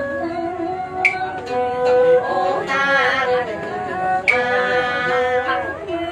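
Live traditional Vietnamese singing with instrumental accompaniment, in the style of ca Huế: wavering sung phrases over held instrumental notes. A sharp click sounds twice, about three seconds apart.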